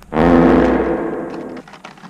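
An edited-in sound effect: a sudden hit followed by a deep, booming pitched tone that fades away over about a second and a half.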